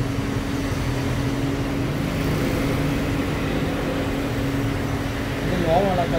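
Steady low mechanical hum with a low rumble of background noise, and a person's voice briefly near the end.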